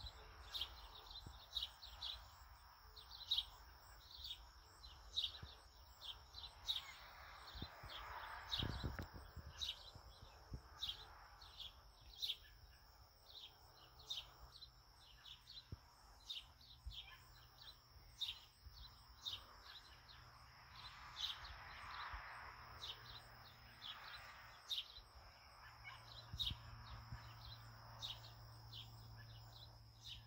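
An agitated animal calling a sharp, high chirp over and over, about once or twice a second, each call a short downward slide, over a steady high buzz.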